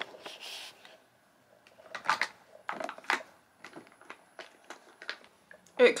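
Light clicks and taps, two or three a second, from handling a lip balm stick and its cap.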